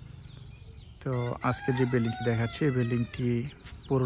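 A rooster crowing in the background, starting about a second in and lasting about a second and a half, over a man's voice.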